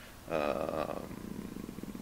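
A man's drawn-out hesitation 'uh' that sinks about halfway through into a low creaky rattle of vocal fry.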